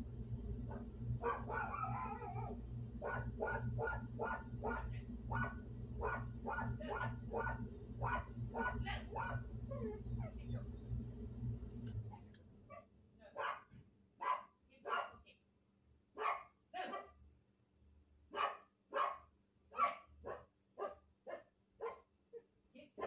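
Dog barking repeatedly, about two barks a second, over the steady low hum of the air conditioner running through a floor register. The hum cuts off suddenly about halfway through, and the barking carries on.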